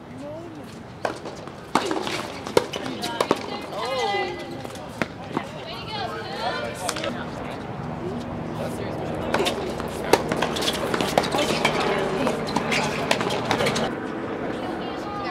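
Tennis balls being struck by racquets in a doubles rally: sharp pops a second or so apart, with voices calling out between shots.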